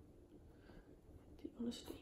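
A woman's quiet, breathy crying: faint breathing, then a short voiced sob and a sniff about a second and a half in.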